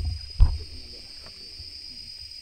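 Dull low thumps of field equipment being handled while cables are connected to a battery pack, the loudest about half a second in, over a steady high-pitched whine.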